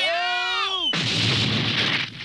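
Cartoon sound effects for a fall: a wavering wail slides down in pitch and is cut off about a second in by a long, noisy crash as the character lands in a junk heap.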